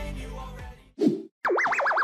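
A song fading out, then a short falling sound, a brief silence, and a cartoon 'boing' sound effect: a tone that wobbles up and down in pitch about four times.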